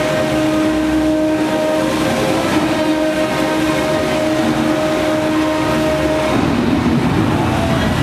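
A suspended Top Spin amusement ride in operation: a loud, steady drone of two low held tones over a rumble. The tones stop abruptly about six seconds in, leaving a broader rumbling noise as the gondola swings down.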